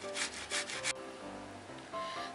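Boiled beetroot being grated on a metal box grater: about three quick scraping strokes in the first second, quieter after, over faint background music.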